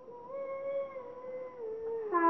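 A child's voice holding one long sung note, steady and then dipping slightly in pitch near the end.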